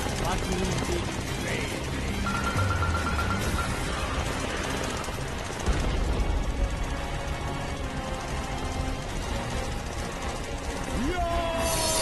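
Cartoon action sound effects over background music: rapid gunfire, then a heavy rocket-launcher blast a little under six seconds in. Falling tones sound near the end.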